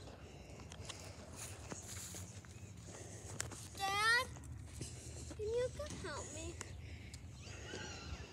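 Children's voices calling out across the street: a high yell that falls sharply in pitch about four seconds in, then a few shorter calls.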